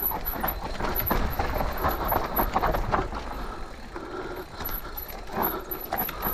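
Intense Tazer MX electric mountain bike rattling over dirt, roots and rocks on a descent: tyre noise on the trail with many short knocks and clatters from the bike as it hits bumps.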